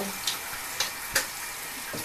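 Shower spray running with a steady hiss, with a few short clicks, the loudest a little after a second in.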